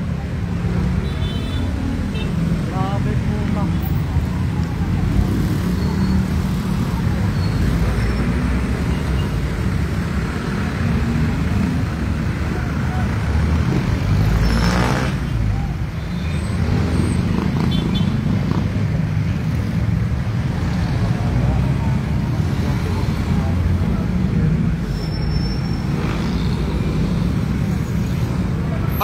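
Steady rumble of road traffic with voices in the background, swelling briefly about fifteen seconds in.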